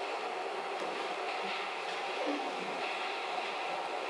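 Metro train sound effect played back over a theatre's loudspeakers: a steady noise of a train running, without a clear rhythm.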